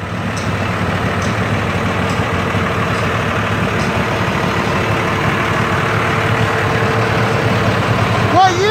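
Dodge semi truck's engine idling steadily, with a strong low rumble.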